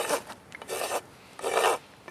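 Farrier's hoof rasp filing a miniature zebu bull's hoof: three separate rasping strokes, each about half a second long.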